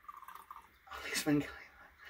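Liquor being poured from a glass bottle into a small glass, the faint pouring tone stopping within the first half-second. A brief voice follows about a second in.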